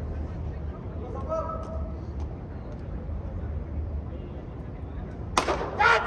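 A cricket bat strikes the ball with a sharp crack about five and a half seconds in, and players shout right after. Before that there is only faint distant talk over a low steady hum.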